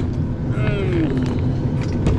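Steady low rumble of an airliner's cabin air system, heard from inside the cabin, with a short voice calling out about half a second in.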